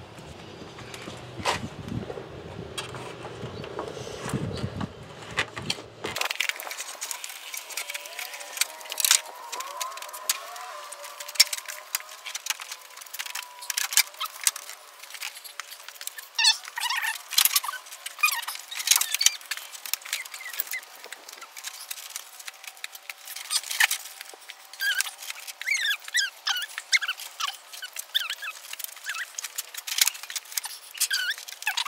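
Plastic radiator fan shroud being worked down into place in the engine bay, slowly and back and forth, giving repeated clicks, knocks and rattles of hard plastic.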